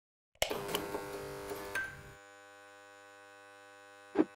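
Electronic logo sting for the PokerGO end card: a sudden hit about half a second in that opens into a sustained synthetic chord, a short bright accent near two seconds, then a quieter steady held drone.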